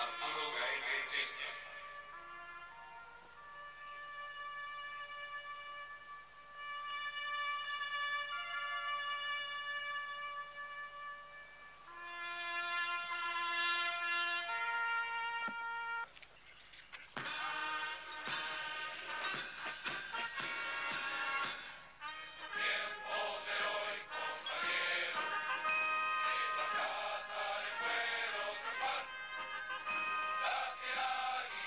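A solo brass horn plays a slow call of long held notes, stepping from pitch to pitch. From about 17 seconds in, fuller ensemble music with many parts takes over.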